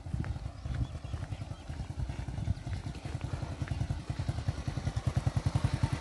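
Small single-cylinder motorcycle engine idling with an even, rapid putter of low thumps that grows steadier and louder toward the end.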